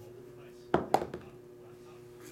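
A small plastic die rolled onto a tabletop mat: a quick cluster of about three clicks as it lands and bounces, starting about three quarters of a second in.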